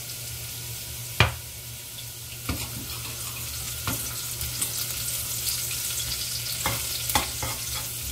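Chopped garlic and black pepper sizzling in hot olive oil in a stainless steel saucepan, a steady hiss. A metal spoon stirs and clinks against the pan a few times, sharpest about a second in.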